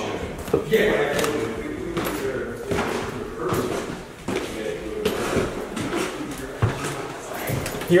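Footsteps climbing a carpeted wooden staircase, with a few irregular sharp knocks and thumps, the loudest near the start and at the end.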